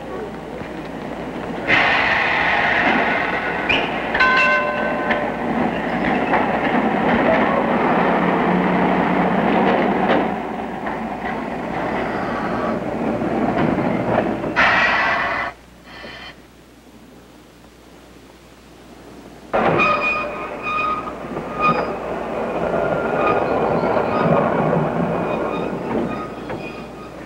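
Streetcars running on street-railway track, with rail noise and high steady wheel tones over it. One run starts suddenly about two seconds in and cuts off sharply after about fifteen seconds. A second run starts suddenly about twenty seconds in.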